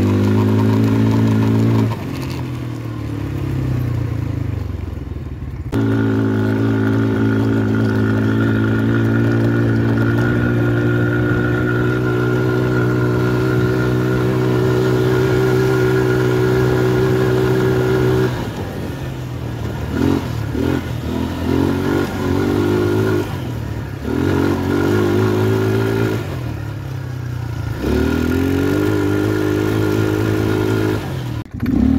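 ATV engine running under throttle. It revs up in the first two seconds, eases off for a few seconds, then holds a steady high rev for about twelve seconds, before easing and picking up again in shorter bursts, with a rise in revs near the end.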